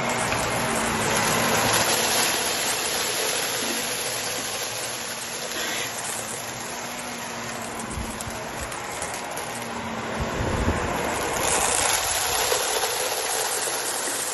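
Shark Lift-Away upright vacuum running on carpet, its steady motor hum and rush of suction air swelling louder twice as it is pushed over scattered bits of debris.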